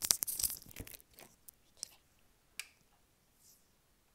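Crackling rustle and clicks of handling noise on a wired earphone's inline microphone as its cable rubs against a fleece sweater. The sound is dense for about the first second, then thins to a few scattered clicks.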